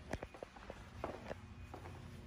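Faint footsteps on a hard shop floor: a few light steps and scuffs as someone walks.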